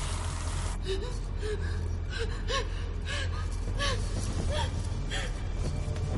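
A woman gasping and whimpering in quick, short breaths, about one every half second, over a low steady drone. A hiss cuts off suddenly about a second in, just before the gasps begin.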